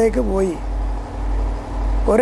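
A man speaking in Malayalam for about half a second, then a pause in which a steady low hum carries on under the recording.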